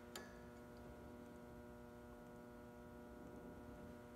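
Near silence with a steady electrical hum and a single light click just after the start, as the dial indicator on its stand is handled.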